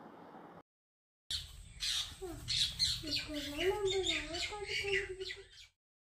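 Birds chirping and squawking in quick, overlapping calls, with a long wavering call underneath from about three seconds in. The sound starts abruptly about a second in and cuts off just before the end.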